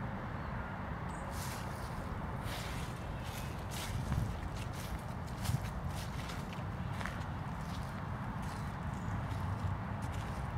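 Irregular footsteps on a path strewn with dry fallen leaves, over a steady low rumble.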